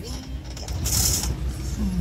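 Steady low engine and road rumble heard inside the cab of a 1990 Sprinter Mallard Class C motorhome rolling slowly forward, with a short hiss about a second in.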